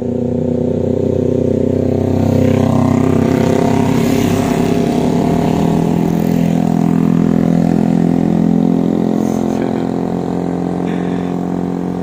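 A group of motorcycles and scooters passing on a wet road, their engines running steadily and swelling louder from about two seconds in, then easing off near the end.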